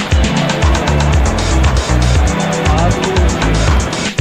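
Loud amusement-arcade din: music with a heavy steady beat mixed with electronic game-machine sound effects.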